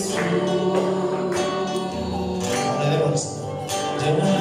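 Gospel worship singing: a hymn sung by several voices with a sustained, flowing melody.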